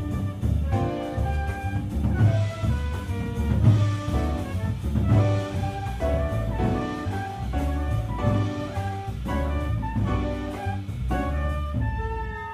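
A jazz quintet playing live: quick runs of horn notes from the saxophone and trumpet over double bass and drum kit.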